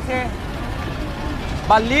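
Live race commentary in Bengali over a steady, noisy background rumble. The voice breaks off just after the start and comes back near the end.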